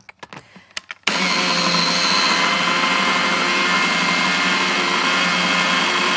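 A few clicks, then about a second in an electric food processor's motor starts and runs steadily and loudly, puréeing fried onions and oil into a smooth paste.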